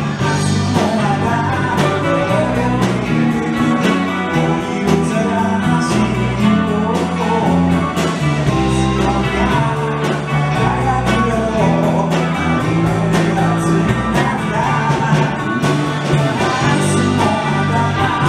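Live rock band playing a cover song: electric guitars, bass and a drum kit keeping a steady beat, with a lead vocal over them.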